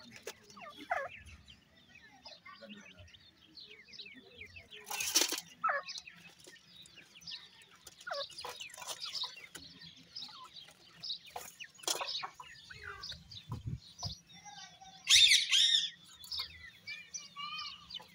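Grey francolin (dakhni teetar) chicks peeping and chirping continuously in quick short notes, with louder bursts about five seconds in and again around fifteen seconds in.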